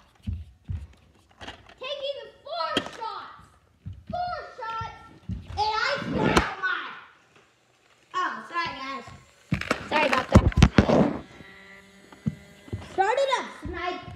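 Children talking and calling out, with a quick cluster of loud thuds about ten seconds in and a faint steady hum near the end.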